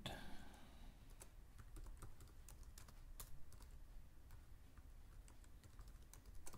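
Faint computer keyboard typing: a scatter of separate key clicks at an uneven pace.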